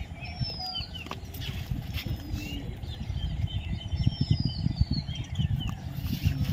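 Birds chirping outdoors, with short chirps and a few longer falling whistles, over a low, uneven rumble.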